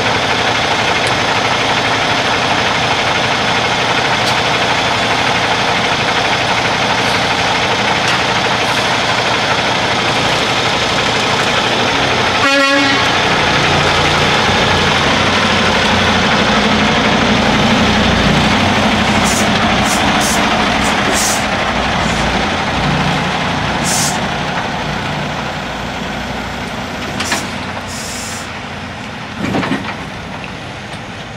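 Kenworth semi-truck's diesel engine running steadily as the tractor pulls out of the shop bay, after a roadside lighting fault was traced to a fuse. There is a brief break about halfway through, and a few short high hisses in the second half.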